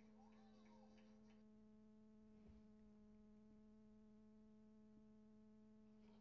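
Near silence with a faint steady electrical hum. A few faint sliding tones pass in the first second and a half.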